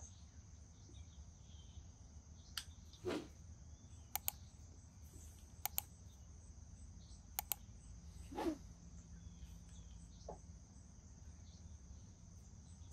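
Faint puffing on a briar tobacco pipe while it is being lit: two soft puffs, about 3 and 8.5 seconds in, among a few short sharp clicks, some in quick pairs. A steady high insect chirr runs underneath.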